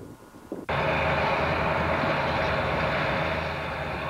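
Crawler bulldozer's diesel engine running steadily as it pushes earth, cutting in abruptly just under a second in.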